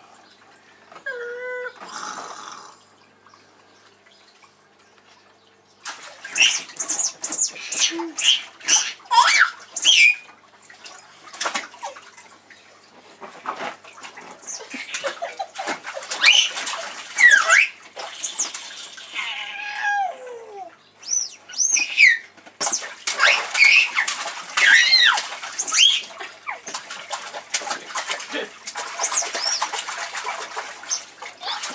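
Water in a small inflatable paddling pool splashing again and again as a baby slaps it with his hands, starting about six seconds in. High-pitched squeals that glide up and down sound over the splashing.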